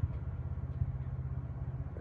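A motor running at a steady idle, a low, even rumble.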